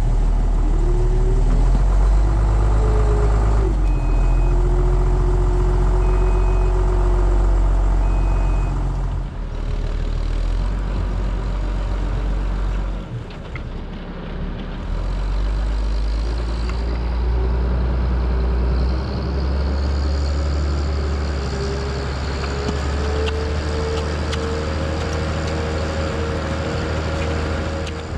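Case IH 1455 tractor's diesel engine running under load as it pulls a trailed sprayer out of a soft, wet plot where it had started to bog down. Three short high beeps sound about two seconds apart a few seconds in, and the engine note rises gradually near the end.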